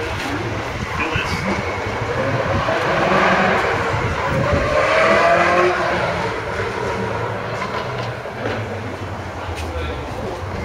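A motor vehicle going past, swelling through the middle and fading again, over steady outdoor noise and indistinct voices.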